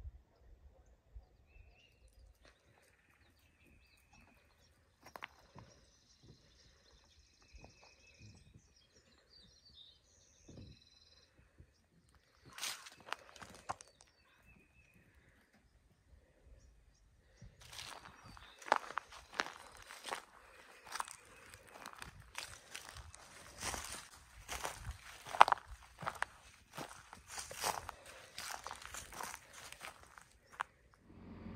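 Footsteps crunching on gravel: a short stretch about twelve seconds in, then steady walking through the second half. Faint bird calls are heard in the quieter first half.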